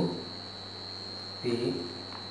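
Steady electrical mains hum with a constant thin high-pitched whine, broken by one short spoken word about one and a half seconds in.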